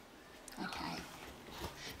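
Quiet moment at a table: a soft murmured "OK" and faint small sounds of paper cards being handled and set down on a tabletop.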